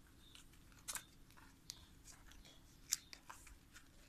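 Faint scratching and clicking of kittens' claws on cardboard and a plastic crate as they play-fight: scattered short ticks, the sharpest about three seconds in.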